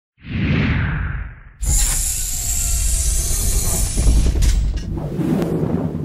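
Intro sound effects: a whoosh that swells and fades over the first second and a half, then a sudden loud burst of rushing noise with a deep rumble underneath, with some music mixed in.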